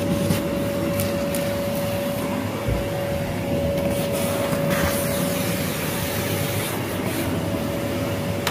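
Vacuum cleaner running steadily with a constant whine, its narrow nozzle worked along the carpet edge at the skirting board.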